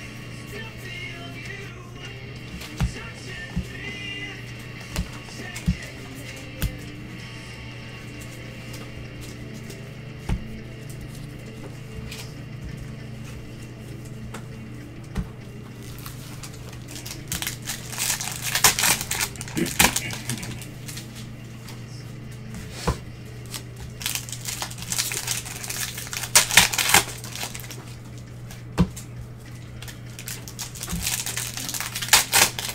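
A plastic trading-card pack wrapper crinkling and tearing in repeated bursts through the second half as a pack is opened. Before that come scattered sharp clicks of cards being handled, all over a steady low hum, with background music fading out in the first few seconds.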